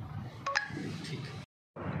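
A short electronic beep about half a second in, over brief low speech. Near the end the sound cuts out completely for a moment.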